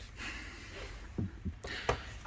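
Handling noise: the plastic-cased power inverter being shifted by hand, with a soft rustle and then a few light knocks, the sharpest near the end.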